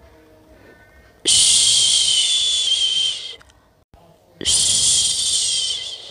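Long, drawn-out shushing 'shhh' sounds of the kind used to soothe a baby to sleep: two hushes of about two seconds each, with a short quiet gap between them.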